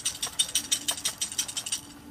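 A small toy submarine shaken hard by hand to throw out water after dipping, giving a fast run of rattling clicks, about six or seven a second, that stops just before the end.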